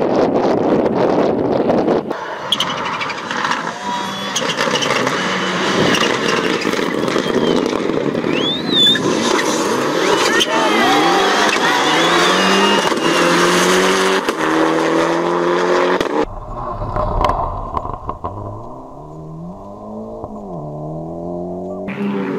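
Rally car engines revving hard and accelerating, the pitch climbing in steps through gear changes, with spectators' voices and shouts in the middle section. Near the end a single car's engine drops in pitch as it lifts off, then rises again as it accelerates away.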